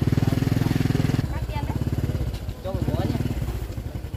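A small motorbike engine running close by, loudest in the first second and then dropping back to a lower, steady run.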